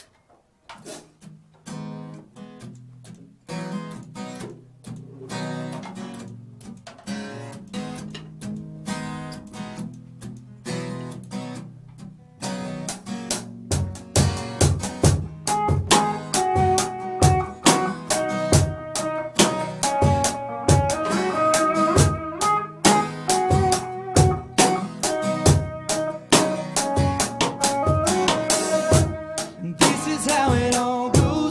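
Live band instrumental intro: guitars picked softly at first, then about twelve seconds in the drum kit joins with a steady beat and the playing grows louder and fuller.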